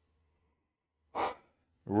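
A man's short sigh through his hand about a second in, after a silent pause, then the start of his speech right at the end.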